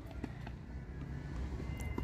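Quiet background: a steady low hum under faint even noise, with no clear ball strikes or other distinct events standing out.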